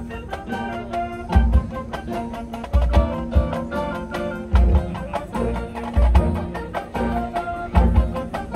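Marching band playing its field show: brass with mallet percussion and drums, many sharp struck notes over held chords, and heavy low hits every second or two.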